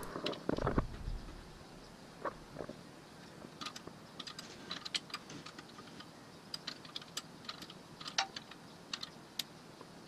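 Light, scattered metallic clicks and ticks of a flare nut wrench working the brake line fitting on a disc brake caliper, with a brief louder handling noise just after the start.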